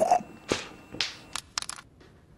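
A small hard object dropped and bouncing: a series of sharp clinks, each with a short ring, spaced about half a second apart and then coming quicker near the end.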